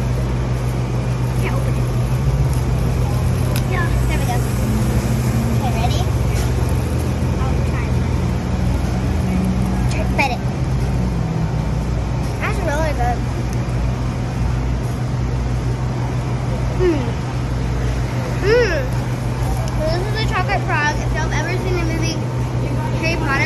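Steady low hum and rumble of city street traffic, with scattered voices that grow more frequent near the end.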